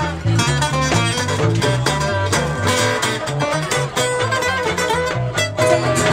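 Small acoustic band playing: a strummed acoustic guitar over a plucked double bass line that steps from note to note, with a violin among the instruments.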